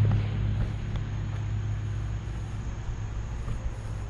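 A steady low engine-like hum.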